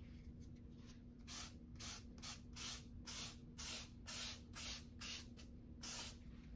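A piece of foam pipe insulation rubbed over soft pastel on paper in short back-and-forth strokes, about two a second, starting about a second in. Each stroke makes a brief scratchy hiss.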